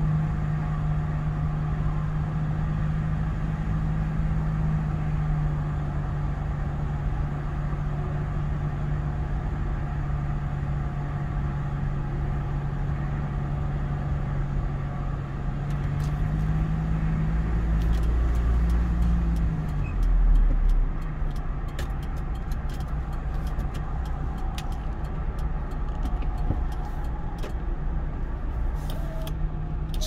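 Car interior driving noise at expressway speed: a steady low engine and road hum under tyre rumble. The hum rises briefly and drops about two-thirds of the way through. Faint ticking in the second half as the car changes lanes, its turn signal clicking.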